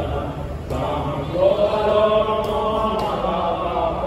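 Devotional chanting sung in long held notes, with a short break just before a second in and then a long sustained note through the middle, over a steady low hum.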